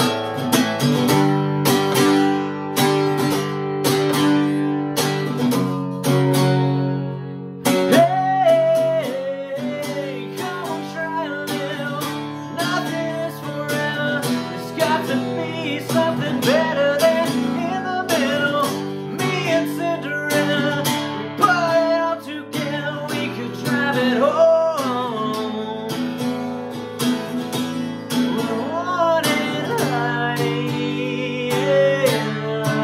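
Strummed acoustic guitar playing steady chords, with a man singing over it from about eight seconds in.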